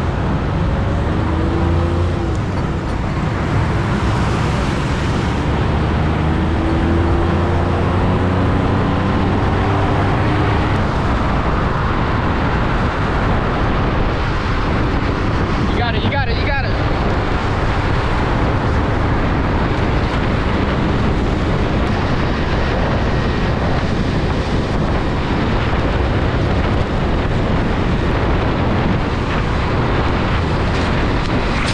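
Steady rush of road and wind noise from being towed at speed alongside a small pickup truck, with the truck's engine rising in pitch as it accelerates during the first ten seconds.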